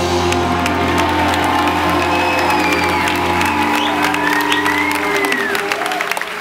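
A live band's final chord on electric guitars, keyboard and bass held and ringing out, fading near the end, as the audience begins to clap and cheer.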